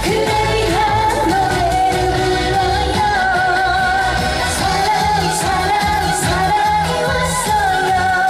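A woman singing a Korean pop song into a handheld microphone over a loud backing track with a steady beat, holding long, wavering notes.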